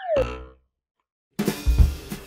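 A short cartoon sound effect with a falling pitch glide, a 'boing' on the animated logo, fading out within half a second. After about a second of silence, music with a drum kit starts.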